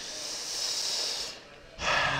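A man takes one long breath close to a microphone, a steady hiss lasting about a second and a half that stops just before he speaks again.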